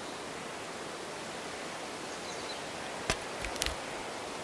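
Steady outdoor woodland hiss, with one sharp click about three seconds in and a few lighter clicks just after it.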